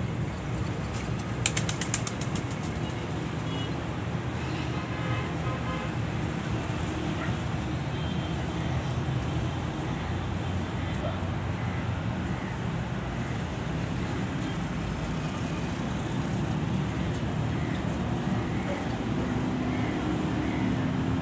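A steady low rumble of background noise, with a quick run of sharp clicks about a second and a half in.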